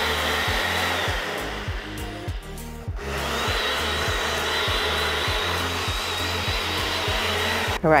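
Personal blender motor running at high speed, blending a milk, oat and chia mixture in its cup: a steady noisy whir with a thin high whine. It stops briefly about three seconds in, then runs on until just before the end.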